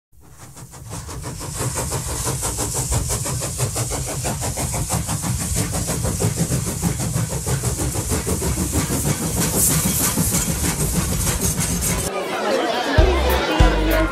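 Steam locomotive working, its exhaust chuffing in a rapid, even beat, fading in over the first two seconds. Near the end it gives way to people talking, with bumps of handling noise on the microphone.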